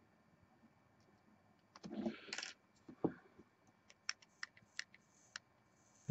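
A thin metal pick nudging and tapping a freshly wrapped wire coil on a rebuildable atomizer deck to spread its turns, where the top of the coil was glowing too hot. Faint: a short scrape about two seconds in, then a handful of small scattered clicks.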